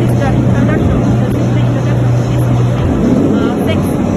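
Digital knife cutting machine running with a steady low hum that stops about three seconds in, over the chatter of a busy hall.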